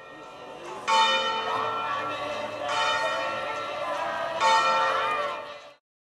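Church bell tolling slowly as a funeral knell, three strokes about two seconds apart, each ringing on into the next, with faint voices underneath. The sound cuts off abruptly near the end.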